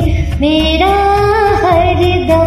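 A woman singing a Hindi devotional song over a karaoke backing track, holding long, wavering notes.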